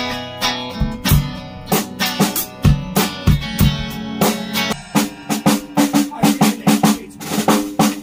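A band playing loud: drum kit hits with kick and snare over held electric guitar and bass notes. The beats come faster and denser in the second half.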